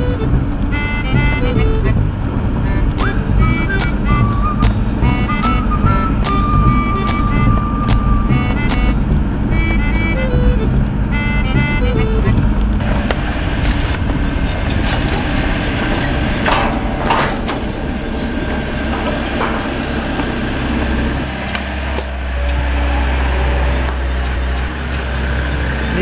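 Intro music with a melody for about the first half. Then roadworks: a wheeled excavator's diesel engine running steadily, getting louder in the last few seconds, with occasional knocks and clatter from digging and loose paving bricks.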